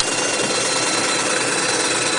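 Jensen 51 replica toy steam engine running steadily under steam and driving its small generators, a steady high whine over the even mechanical running noise.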